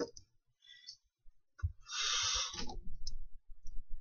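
Scattered clicks and light knocks from a person moving and handling things close to the microphone. A breathy rush lasting about a second comes about two seconds in.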